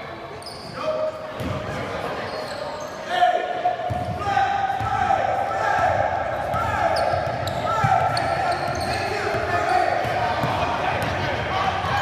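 Basketball bouncing on a hardwood gym floor amid spectators' shouting and cheering, which swells about four seconds in. The voices echo in the large gymnasium.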